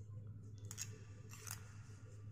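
Wooden knitting needles clicking against each other as stitches are worked, two short scratchy clicks about a second apart, over a steady low hum.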